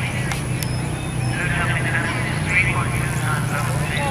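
People talking in the distance over a steady low mechanical hum.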